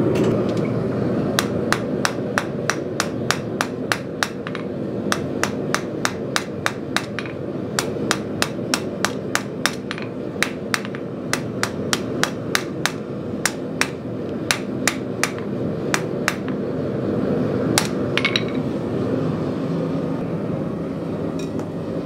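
Hand hammer striking red-hot half-inch square steel bar on an anvil in a quick, steady run of ringing blows, about two to three a second, over a steady background hum. The blows bevel and lightly texture the bar's sharp factory corners. The hammering stops about sixteen seconds in, and a few more blows follow a little later.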